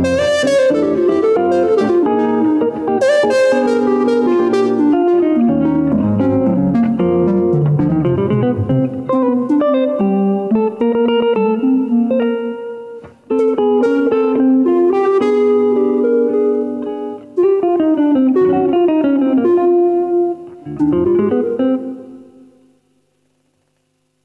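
Live duo of a semi-hollow electric guitar and a woodwind playing a tune, with held and gliding melody notes over picked guitar. The piece ends about two seconds before the close, the last notes dying away into near silence.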